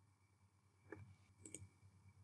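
Two faint computer-mouse clicks about half a second apart, the second a quick double tick, in near silence.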